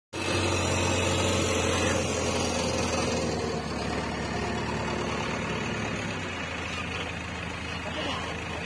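JCB backhoe loader's diesel engine running steadily with a low hum, easing off slightly about six seconds in.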